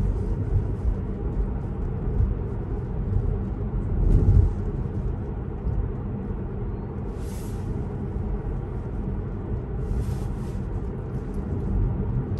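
Road and tyre rumble heard inside the cabin of an electric Tesla driving along a street, with no engine note. It is steady and swells briefly about four seconds in.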